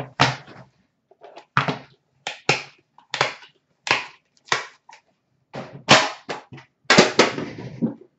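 A dozen or so sharp, irregular clicks and knocks as a small box of hockey cards is opened and handled, with the loudest knocks near the end.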